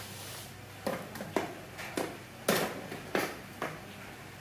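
Light knocks and clicks from handling a carbon road bike on its metal wall rack, about seven scattered sharp taps over a faint steady hiss.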